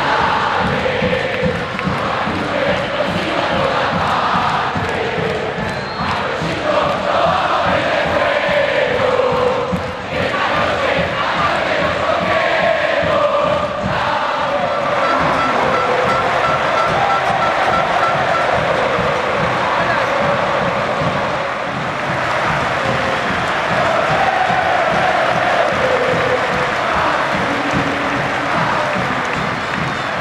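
Football crowd chanting and singing in unison in the stands, a dense, continuous mass of voices.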